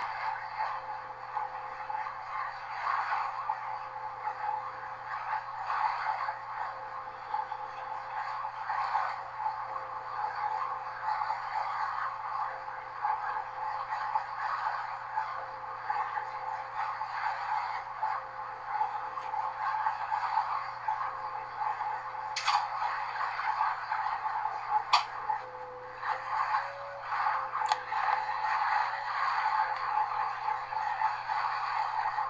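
Running noise of Class 201 'Hastings' diesel-electric multiple unit 1001 on the move, heard inside its rear cab. A steady din and low hum, a thin whine that wavers slightly in pitch, and three sharp clicks in the last third.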